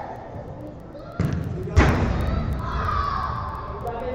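A football taking one hard impact, a single loud thud about two seconds in, followed by players' voices calling out across the indoor pitch.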